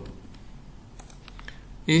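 A few faint, quick clicks at a computer, several close together about a second in, in a pause between narrated sentences.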